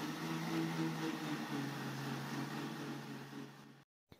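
Kitchen mixer grinder motor running steadily as it churns milk cream with ice water to separate out butter. Its hum drops slightly in pitch about one and a half seconds in, and the motor stops just before the end.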